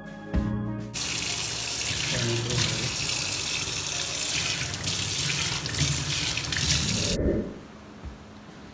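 Water running from a kitchen tap onto a cupped hand and into the sink, a steady rush that starts about a second in and stops suddenly near the end.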